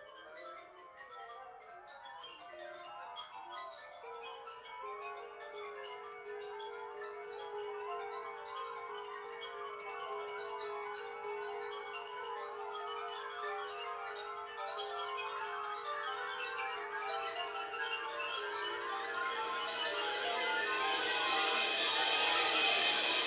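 Wind ensemble playing contemporary concert-band music: a dense texture of quick ringing mallet-percussion notes over a long repeated held note, building steadily louder into a bright, loud wash near the end.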